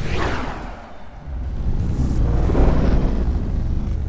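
Logo-sting sound effect: a whoosh, then a deep rumbling boom that builds from about a second in, peaks past the middle and fades near the end, like a synthetic explosion.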